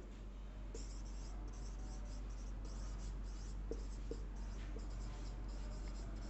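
Marker pen writing on a whiteboard: a run of short, high strokes of the felt tip, one after another with brief gaps, as words are written out by hand.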